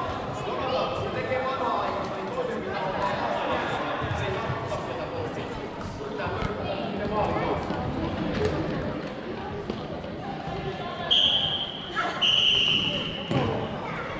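Floorball play in a large sports hall: players and coaches shouting and calling, with the clack of sticks and the plastic ball and footfalls on the court. Near the end, two sharp referee's whistle blasts, the second longer than the first.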